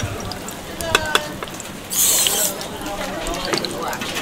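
Deep-frying oil in a wok sizzling, with a short, loud burst of sizzling about two seconds in as a batter-filled ring mould goes into the hot oil. A few sharp metal clicks of the ladle against the pot and wok come just before.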